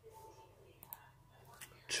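A faint whispered voice and a few soft clicks in a quiet small room. A man's voice starts speaking right at the end.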